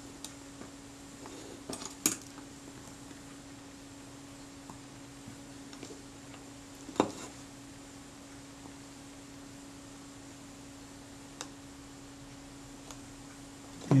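Light clicks and taps of a small plastic spatula and fingertips on a Kodak Retina camera's metal front door as re-glued leatherette is pressed down. A few sharp clicks come about two seconds in and the loudest about seven seconds in, over a steady faint hum.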